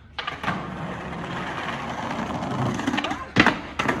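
Skateboard rolling over paving stones, the wheel noise growing louder as it comes closer, then two sharp clacks of the board about three and a half seconds in.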